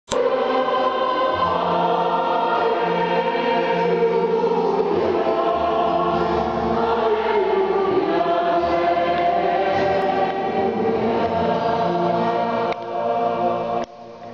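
Church choir singing the Gospel acclamation with held notes over a steady low accompaniment. The singing fades and stops just before the end.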